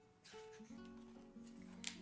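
Faint background music of plucked acoustic guitar notes. Near the end, a brief paper rustle as a picture-book page is turned.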